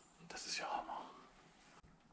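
A man briefly whispering, a short breathy word or exclamation under a second long, over faint room tone.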